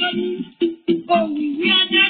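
Singing voice with music, pausing briefly a little after half a second in.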